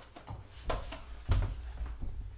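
Handling and movement noise as a person stoops down and lifts a dog: a few short knocks and rustles over a low rumble, the loudest knock about a second and a quarter in.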